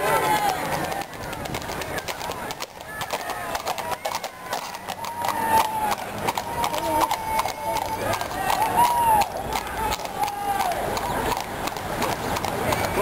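Horses walking on asphalt, their shod hooves clip-clopping in an uneven run of clops, with people's voices over them.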